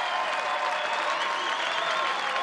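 Tennis crowd applauding steadily, a dense even clapping, at the end of the match.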